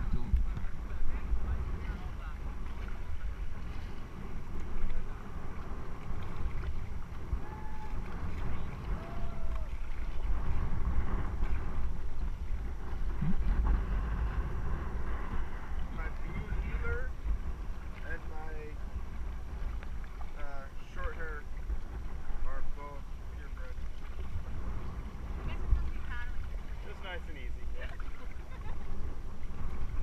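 Wind rumbling on the raft-mounted camera's microphone while paddles dip into calm river water around an inflatable raft, with faint, indistinct voices now and then.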